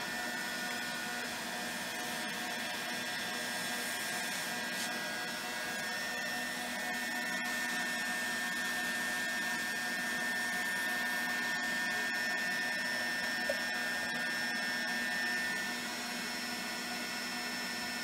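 Steady whirring hiss of the vacuum source feeding a player-piano pouch dishing tool, running throughout, with a high steady tone in it that drops away about three-quarters of the way through. A few faint clicks from small parts being handled on the bench.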